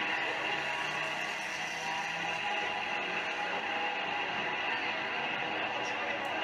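A field of stock cars racing on an oval track, their engines blending into a steady drone with heavy hiss, as picked up by an old camcorder's microphone.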